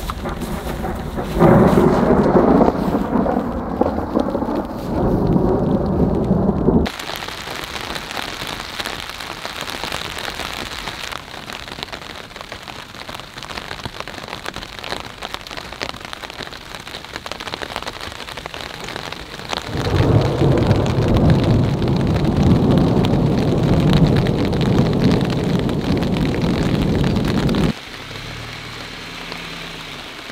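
Steady rain falling, with loud thunder rumbling over it for the first seven seconds or so and again for about eight seconds from two-thirds of the way in; each rumble cuts off abruptly.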